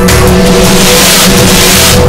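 Loud TV-program opening theme music with held tones, overlaid by a rushing whoosh-like noise that swells through the middle.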